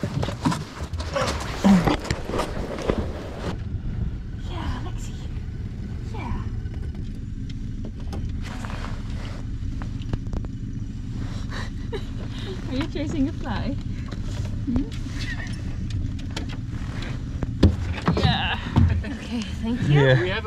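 Small boat outboard motor idling steadily, with occasional knocks from the hull.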